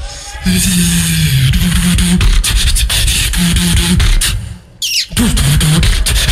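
Beatboxer performing a battle round into a handheld microphone through the PA: deep pitched bass notes layered with sharp clicks and snare-like hits. The beat stops briefly about four seconds in, a quick high gliding whistle-like sound follows, and then the beat comes back.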